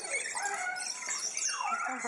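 Many aviary birds calling together: a steady wash of high chirps and twitters, with louder drawn-out calls over them, one held about half a second in and another rising and falling past the middle.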